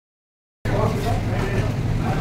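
Restaurant background noise: a steady low hum with indistinct voices, starting abruptly about half a second in after silence.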